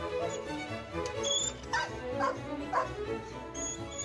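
A dog barking in short, sharp barks, about four in quick succession in the middle, over background music.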